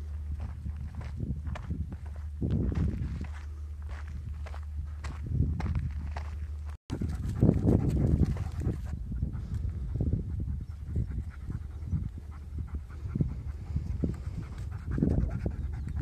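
A large dog panting in repeated short breaths, open-mouthed, as it walks over loose dirt. A steady low rumble underlies the first half and stops about seven seconds in.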